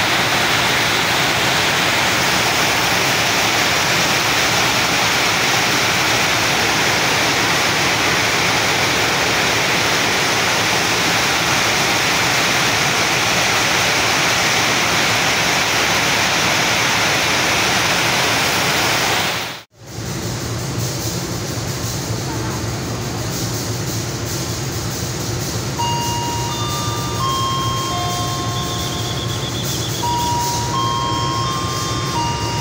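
Heavy rain pouring down, a loud steady hiss. About two-thirds through it cuts to a quieter scene with a diesel locomotive's steady low engine note as a train comes in, and a few short tones at different pitches near the end.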